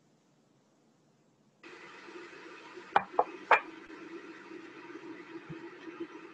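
Near silence, then about a second and a half in a steady background hiss with a low hum cuts in abruptly, like an open microphone on a video call. Three sharp knocks follow close together about halfway through.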